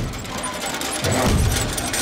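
Cartoon sound effect of a small wooden mine cart rolling along rails: a steady rattling clatter with a low rumble that swells about a second in.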